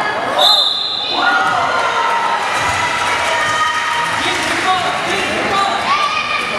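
A basketball bouncing on a hardwood gym floor, with sneakers squeaking as players move, and voices over it.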